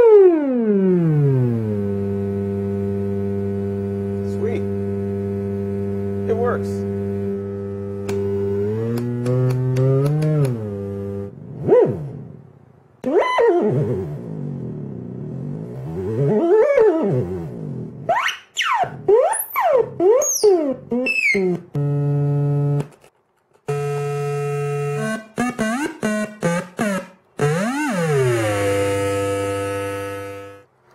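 Homemade function generator tone played through a small monitor speaker: a buzzy tone that drops steeply in pitch over the first second or two and holds low and steady. It then swoops up and down as the frequency dials are turned, with high rising glides and stretches chopped into short on-off pulses.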